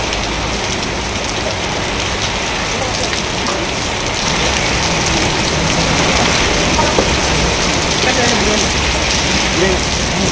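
Heavy rain pouring steadily in a storm, a dense even hiss that grows slightly louder about four seconds in.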